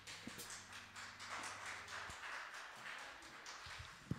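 Faint scattered clapping from a few people after a song, with a low amplifier hum that cuts out about halfway through.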